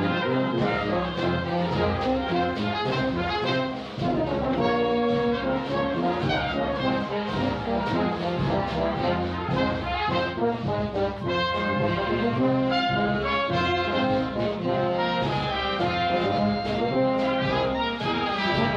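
A Brazilian dobrado, a march for wind band (banda de música), with the brass leading over a steady march beat. A brief dip in level just before four seconds in, then full band again.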